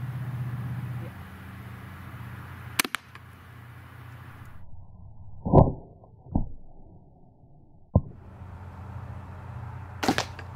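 A 12-gauge shotgun fires a low-velocity (about 217 ft/s) nylon-and-copper less-lethal slug: one sharp shot about three seconds in. It is followed by several deep, muffled, drawn-out thumps, the loudest about halfway through, as the shot and impact are heard slowed down.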